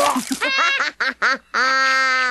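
A cartoon character's voice crying out without words: a rising cry, several short cries, then one held cry from about a second and a half in.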